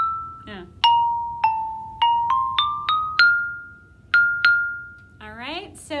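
Xylophone bars struck one at a time with mallets, playing a melody that steps upward in pitch, each note sharp and quickly fading. It ends on the top note struck twice, the second left to ring for about a second.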